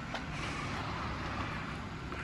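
Peugeot SUV rolling slowly towards the listener, a steady low noise of tyres and drivetrain with no sudden sounds.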